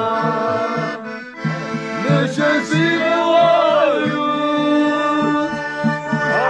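Men singing a Georgian folk song together to a button accordion, with a rope-laced hand drum beating a steady rhythm underneath.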